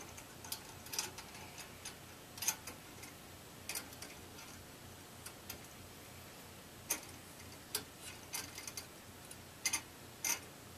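Irregular light metallic clicks and taps as a screwdriver, small screws and steel mounting brackets are handled against a heatpipe CPU tower cooler. About twenty sharp clicks come at uneven intervals, some in quick pairs, with a cluster near the end.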